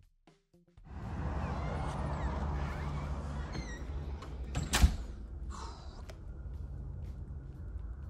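A door and steady room noise as someone enters a house: a steady rushing room noise sets in about a second in, and a door knocks shut sharply once a little past halfway.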